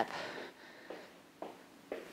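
Faint, light footfalls of trainers stepping side to side on a wooden floor, three soft taps about half a second apart, after a breath.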